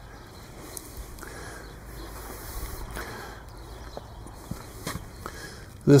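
Quiet footsteps on a snow-dusted asphalt driveway, with a few soft knocks of camera-handling noise.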